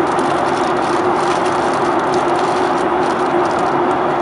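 Steady cabin noise inside a Boeing 737-800 in flight: its CFM56-7B turbofan engines and the airflow make an even rushing sound with a steady droning hum underneath.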